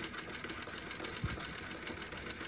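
Singer Model 20 child's hand-cranked chain-stitch sewing machine running a stitch through a paper napkin, with a fast, even mechanical clatter of the needle bar and mechanism.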